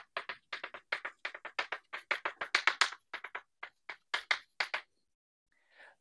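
Chalk writing on a blackboard: a quick, irregular run of sharp taps and short scratches as the strokes of an equation go down, stopping about a second before the end.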